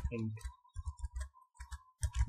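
Computer keyboard typing: a few separate keystrokes clicking as code is typed.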